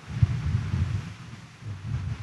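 A low, uneven rumble with a few soft thumps, wind noise on the microphone.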